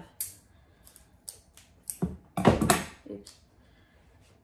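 Soft cloth medical tape being pulled and torn off the roll: a few short crackles, then a louder rip lasting about a second, about two seconds in.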